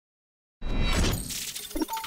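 A sudden, loud, noisy sound effect that resembles something shattering, starting about half a second in and carrying on. It is the record label's logo intro sting.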